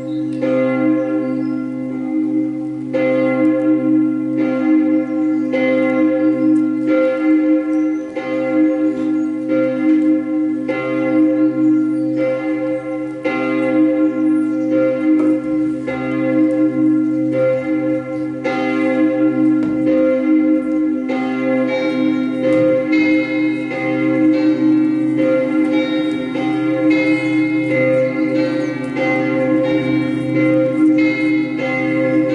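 Bell-like music: struck bell tones ring about once a second over a steady low drone. About two-thirds of the way in, higher and quicker bell notes join in.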